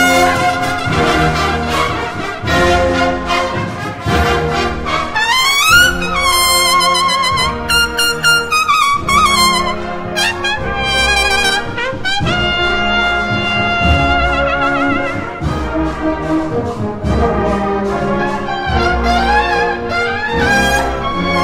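A Holy Week processional brass band playing a march: trumpets carrying a high, wavering melody over regular drum beats.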